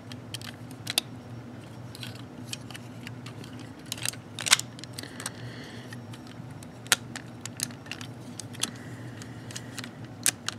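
Plastic parts of a TFC Divebomb transformable figure clicking and rattling as they are handled and pressed together, with scattered sharp clicks, loudest about four and a half seconds in and again near seven seconds, over a low steady hum.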